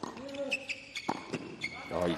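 Tennis rally on a hard court: several sharp knocks of the ball off the rackets and the court, with short high squeaks of sneakers on the court surface and a player's grunt on a shot.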